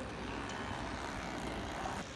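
Steady, even background noise of a city heard from high up, a distant traffic hum with no distinct events.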